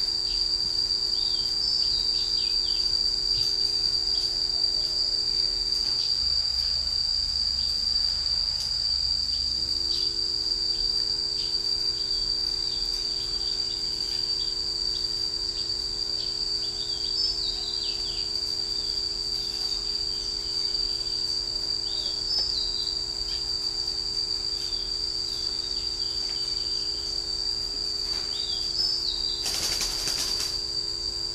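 Insects keeping up a steady, high-pitched drone, with short faint chirps now and then.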